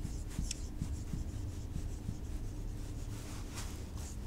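Marker pen writing on a whiteboard: faint rubbing strokes of the felt tip with a few short high squeaks.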